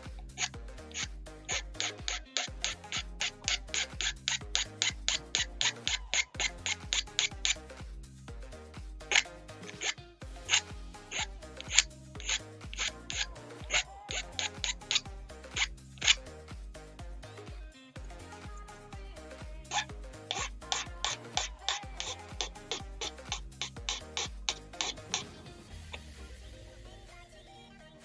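Needle file strokes on a plastic model-kit part, filing down leftover sprue nubs: quick scraping strokes, about four or five a second, in runs of several seconds with short pauses between. Background music with a beat plays underneath.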